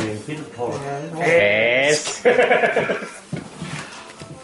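A person's voice making two drawn-out, quavering, bleat-like calls, the first about a second in and the second just after it.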